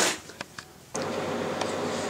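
A short burst of noise at the start, then quiet; about a second in, a steady background hiss with a faint hum sets in suddenly and holds, as at a cut between recordings.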